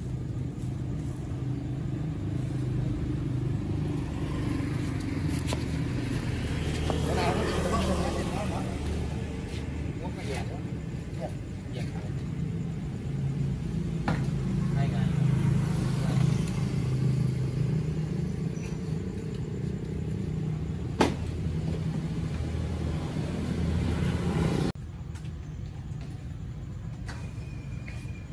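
Market ambience dominated by a motor vehicle engine running steadily nearby, a low rumble, with background voices and a few sharp clicks. The sound drops abruptly near the end.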